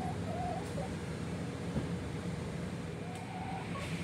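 A hen giving a few soft, short clucks, once near the start and again late on, over a steady low hum.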